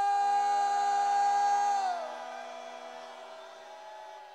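A man's drawn-out shouted call through a microphone and PA, the traditional cry "암행어사 출두야" announcing a royal secret inspector, held on one steady pitch and then sliding down about two seconds in before trailing off with echo.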